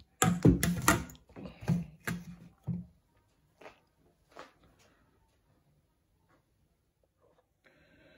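Knocks and clatter from a plastic blender jug and a stainless steel bowl being handled on a kitchen worktop as fruit goes into the jug. There are several sharp knocks in the first three seconds, then a couple of faint taps.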